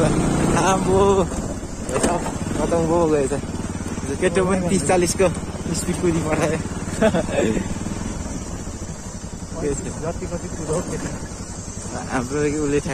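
Motorcycle engine running at low speed on a rough dirt track, a steady low hum throughout. A voice comes in over it in several short stretches.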